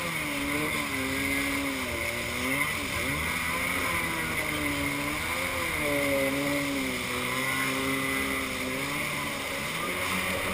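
Kawasaki X2 jet ski's two-stroke engine running under way, its pitch dipping and climbing several times as the throttle is eased and opened, over a steady hiss of spray and wind.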